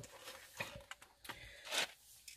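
A quiet pause with faint small clicks and a soft rustle of food containers being handled, with a short louder rustle just before the end.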